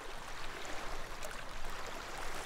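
Seawater washing and lapping against shoreline rocks, a steady noisy wash without distinct splashes.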